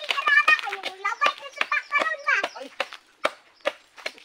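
A child's high-pitched voice calling out, with sharp clicks and knocks scattered through it.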